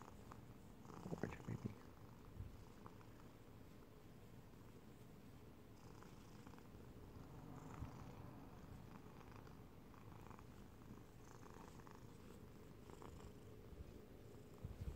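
Domestic cat purring faintly and steadily while its head is stroked, with a few brief louder sounds about a second in.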